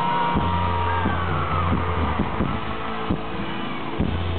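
Live band music in an instrumental passage led by acoustic guitar over steady low bass notes, with audience members whooping and yelling over it.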